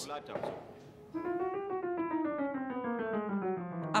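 Grand piano played in a descending run of single notes, starting about a second in and stepping steadily lower for about three seconds.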